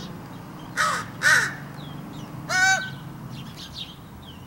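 Crow calling: two harsh caws close together about a second in, then a third, clearer and more tonal call a little past halfway.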